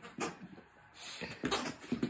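Dog playing with a plush toy on carpet: a sharp knock shortly after the start, then short irregular rustles and scuffs in the second half.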